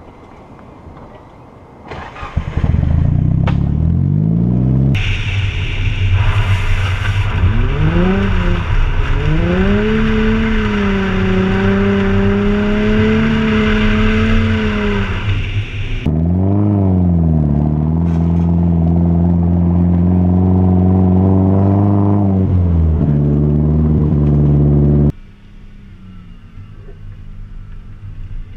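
Engine notes of a Nissan 240SX with a turbocharged SR20DET four-cylinder and a Nissan 350Z's V6, heard one after the other while driving. Each revs up, drops back and holds a steady note, with abrupt cuts between clips. A hiss of wind and road runs along with the engine through the middle stretch, and the sound stops suddenly just before the end.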